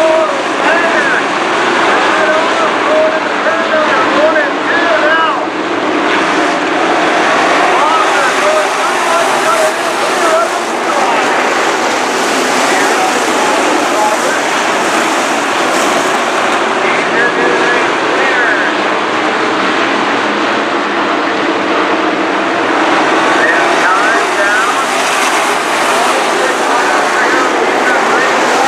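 A pack of dirt-track sport modified race cars running at race speed, their engines rising and falling in pitch as they work through the turns, over a steady wash of engine noise from the field.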